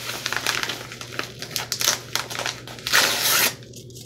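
A yellow padded mailer envelope rustling and crinkling as it is handled, in a run of irregular crackles with a louder burst about three seconds in.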